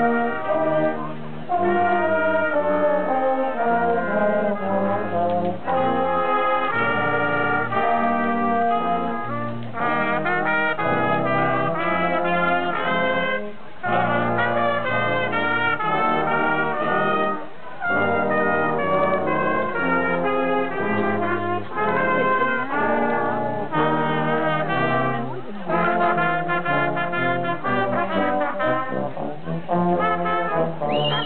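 Brass band with trombones playing a piece in harmony, with short breaks between phrases a few times.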